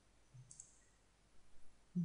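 A faint computer mouse click about half a second in, over quiet room tone.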